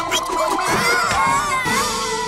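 Cartoon background music with a high, wavering yell from a cartoon fox being shaken about on a bamboo pole.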